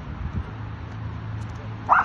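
Belgian Malinois giving one short, sharp bark near the end, over a steady low hum.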